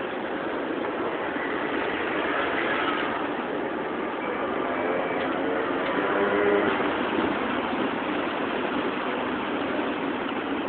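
Street traffic: engines and tyres of passing vehicles, a steady noise that swells twice and is loudest about six seconds in, as a bus and a motor scooter come by.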